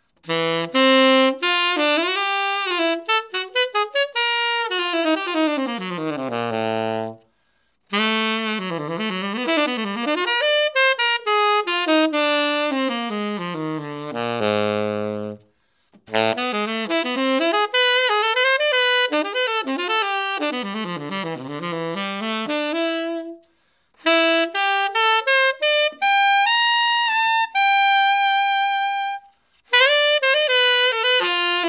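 Selmer Mark VI tenor saxophone played solo: fast jazz runs that sweep down to the bottom of the horn, in four phrases separated by short breaths. The last phrase ends on a long held high note.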